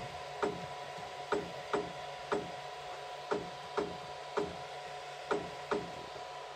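Flashforge Guider 2 3D printer during Z-offset calibration: a run of short clicks, about two a second, as the negative button is pressed over and over to step the build plate up toward the nozzle. A steady hum from the printer runs underneath.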